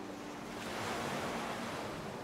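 A wash of surf noise, like a wave running up a shore, swells about half a second in and then ebbs, laid into the gap between two lo-fi tracks. The last notes of the previous track fade out under it at the start.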